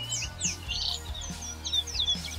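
Small birds chirping and tweeting in quick, high, sliding calls over steady low background music.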